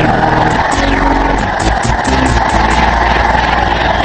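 Cartoon soundtrack: a submarine's engine running as a steady low drone under music, with a string of quick, high, falling whooshes.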